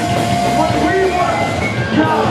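Hardcore punk band playing live and loud: electric guitars, bass and drums with a shouted lead vocal.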